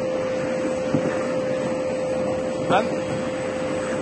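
Vacuum carrot-unloading machine running: a steady whir with one constant humming tone.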